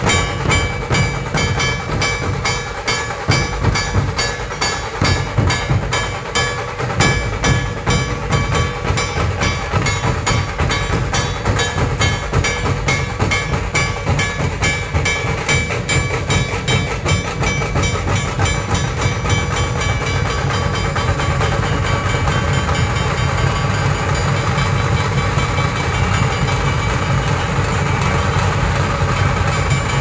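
A group of dhol barrel drums played in a street procession, beating a fast, regular rhythm. In the second half the separate beats run together into a steady roll.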